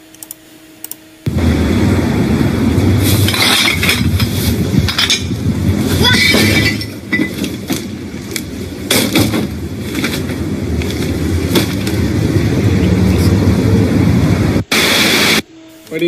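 Loud, harsh, distorted soundtrack of a played prank video: voices mixed with crackling clatter, starting suddenly about a second in. A short burst of noise near the end, then it cuts off.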